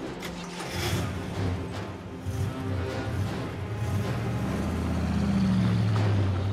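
Dramatic background music over an old sedan's engine running and revving as the car gets ready to pull away, growing louder toward the end.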